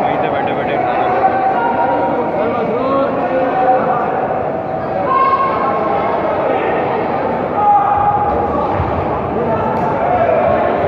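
Many overlapping voices of spectators and coaches calling out, echoing in a large sports hall, with occasional dull thuds of kicks landing or feet striking the mats.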